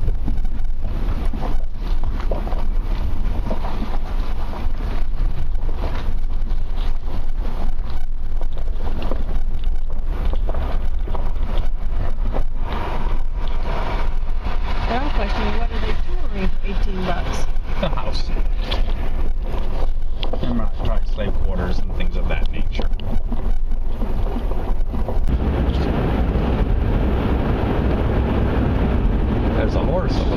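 Inside a moving car: steady low engine and road rumble with wind buffeting the microphone, growing louder and fuller near the end as the car gets going on the open road.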